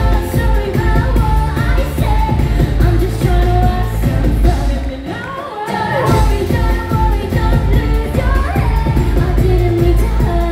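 Live musical-theatre pop performance: several female voices singing into microphones over a live band with a heavy, pounding bass beat. Around the middle the bass drops out for under a second, then the full band comes back in.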